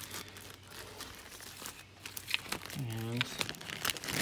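Plastic parts bags and packaging crinkling and rustling as they are handled, an irregular run of small crackles.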